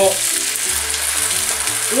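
Asparagus tips and green beans sizzling in olive oil in a frying pan as hot water is poured in, a steady hiss.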